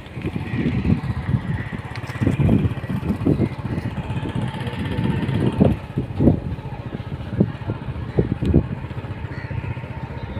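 A vehicle engine runs steadily as the vehicle moves along, with an uneven low rumble swelling and falling throughout.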